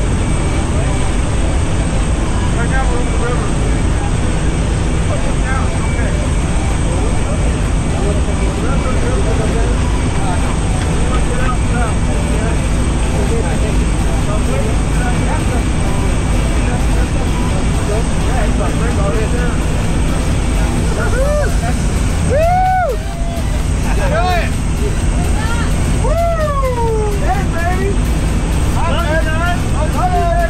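Steady drone of a jump plane's engine and propeller heard inside the cabin in flight. Voices rise over it in the second half.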